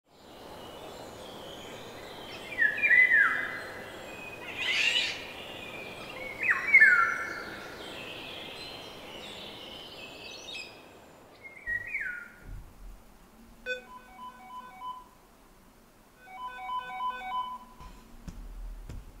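Birds calling, with loud, short whistled notes that slide downward, over a steady outdoor hiss. About 13 seconds in, a smartphone alarm begins playing a short, repeating electronic tune. It plays twice, with a brief gap between.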